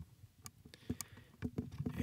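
A few faint, sharp clicks and small knocks of handling as a microphone is threaded onto a desk mic stand's adapter.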